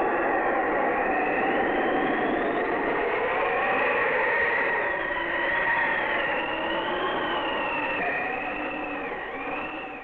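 Howling storm wind: a steady rush with thin whistling tones that waver slowly up and down, fading near the end.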